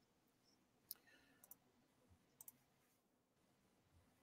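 Near silence with a few faint computer mouse clicks, one about a second in and a quick pair about two and a half seconds in.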